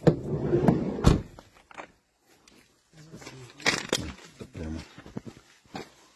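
A loud, muffled rumble ending in a heavy thump about a second in, followed by a few seconds of brief, indistinct voices.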